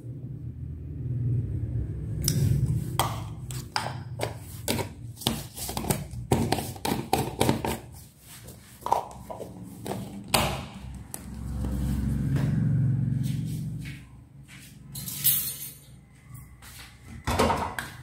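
Irregular clicks and taps of a spoon against a spice container and steel bowl as ground black pepper is added to chopped chicken, packed mostly into the first half with a few more near the end. A low rumble swells twice underneath.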